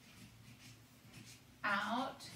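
Marker pen writing on chart paper: a run of short, faint scratching strokes. A brief voiced sound from the writer comes in near the end.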